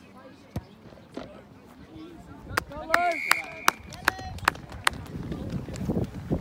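A referee's whistle blows once for about half a second, roughly three seconds in. Around it come sharp handclaps and shouts from spectators.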